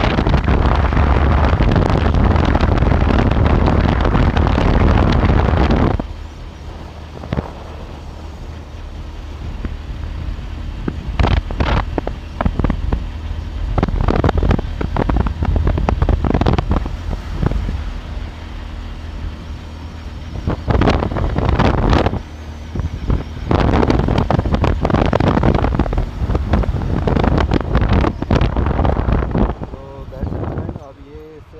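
Hero Hunk motorcycle's single-cylinder engine running on the move, heavily buffeted by wind on the microphone. The wind rush is loudest for the first six seconds; after that the engine's low note comes through under repeated short gusts.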